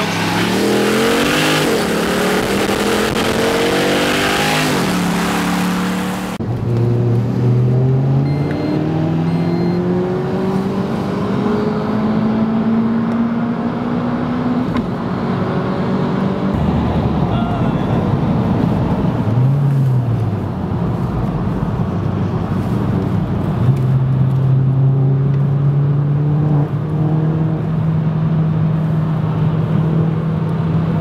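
Car engine accelerating hard at full throttle, its pitch climbing through the gears, then settling into a steady drone near the end. After about six seconds the sound turns suddenly duller, losing its treble.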